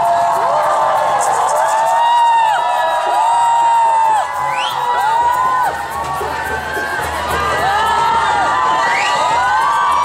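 Large crowd of marchers cheering and shouting: many raised voices overlap in long rising-and-falling cries over a steady crowd din.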